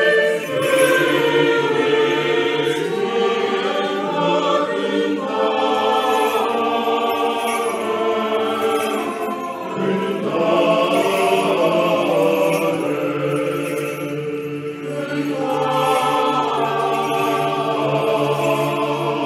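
Background music of a choir chanting, with several voices holding long notes that change slowly, in the manner of sacred choral chant.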